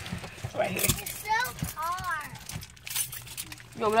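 A young child's high-pitched voice calling out a couple of short sing-song sounds, with the crinkle and crackle of a plastic fruit-snack pouch being handled.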